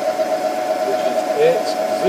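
Haas CNC milling machine running with a steady, unchanging mid-pitched whine as the end mill feeds slowly along at 12 inches per minute.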